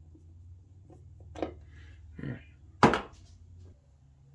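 A few short knocks and handling sounds as a small 1-72 tap and its tap wrench are withdrawn from a turnout's frog tab and put down, over a low steady hum. The loudest sound, near the end, comes with a spoken word.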